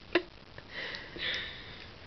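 A woman's short laugh sound, then two long breathy breaths as she catches her breath between bursts of laughter.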